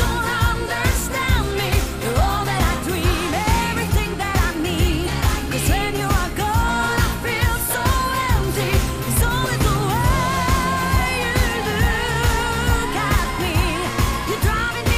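Pop song: a woman singing long, wavering notes over a steady drum beat and full band backing.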